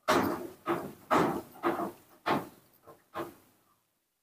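A baby monkey sucking eagerly at a milk bottle's nipple: a run of about seven short wet sucking sounds, roughly two a second, each fading quickly.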